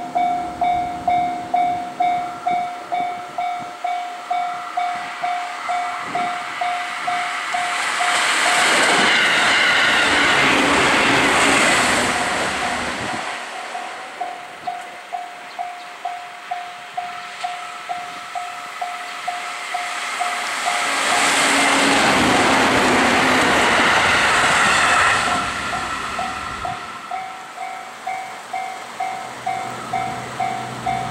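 A level-crossing warning bell rings in a steady beat of about two strikes a second. Twice it is drowned out as a JR Central 311 series electric train passes with a loud rush of wheel and rail noise, and the bell carries on after each pass.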